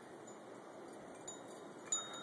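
Wind chimes tinkling faintly, two light high ringing notes in the second half, over a quiet steady hiss.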